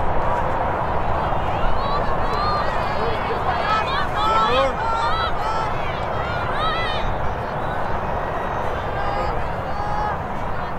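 Girls' voices calling and shouting during lacrosse play: many short, high-pitched calls overlapping, loudest in the middle of the stretch. Under them runs a steady low rumble.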